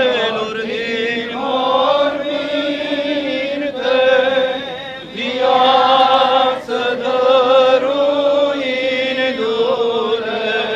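Voices chanting an Eastern Orthodox liturgical chant, in phrases of long held notes that bend slowly in pitch.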